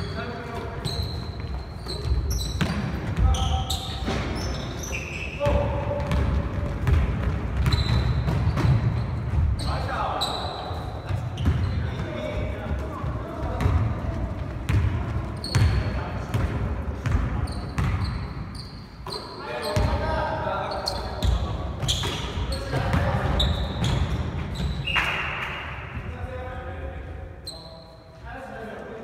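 Basketball game on a hardwood gym floor: the ball bouncing and hitting, sneakers squeaking and players calling out, echoing in a large hall.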